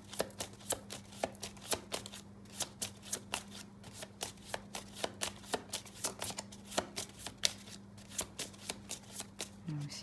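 A deck of cards being shuffled by hand: a steady run of light, irregular clicks and riffles, several a second, over a faint steady hum.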